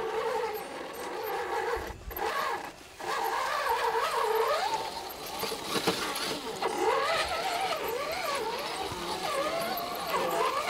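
A scale RC rock crawler's electric motor and gear train whining as it climbs over rock. The pitch wanders up and down with the throttle, and the sound drops out briefly twice around two to three seconds in.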